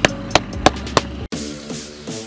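A few sharp knocks over a low background hum, then the sound cuts off abruptly a little over a second in and electronic outro music begins, with quick repeating notes on a steady beat.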